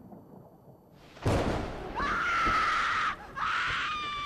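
Spooky sound effects: a low rumble, then a sudden loud crash about a second in, followed by a long high cry that breaks off briefly and starts again.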